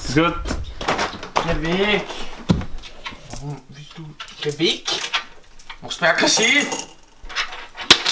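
Small hard objects clinking and jingling on a desk, with a bright metallic ringing cluster about six seconds in, among a voice calling "Schau mal!"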